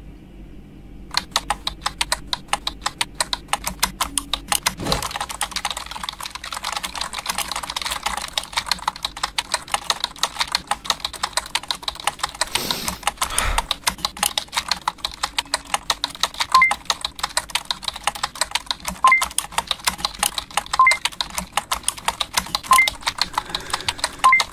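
Rapid, steady typing on a computer keyboard, fast keystroke clicks starting about a second in. A few short high beeps sound in the second half.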